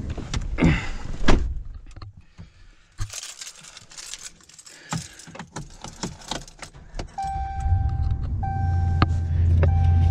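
Keys jangling and clicking as the driver gets into a Ram 1500 pickup. About seven seconds in, a dashboard warning chime sounds in short repeated tones and the truck's engine starts, settling into a steady low rumble.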